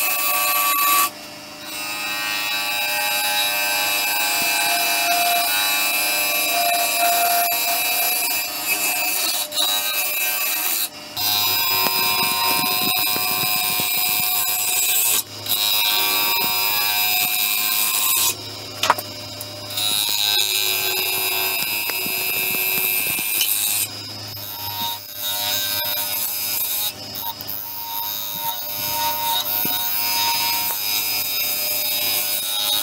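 Bowl gouge cutting the inside of a spinning madrone-and-epoxy-resin bowl on a wood lathe: a continuous scraping hiss, with steady high tones, that breaks off briefly several times as the tool is lifted from the work.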